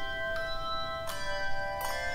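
A handbell choir playing: brass handbells struck about three times, the notes of each strike left ringing and overlapping into sustained chords.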